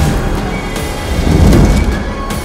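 Trailer soundtrack of music and sound design: a dense hiss with a deep rumble underneath, swelling again about a second and a half in.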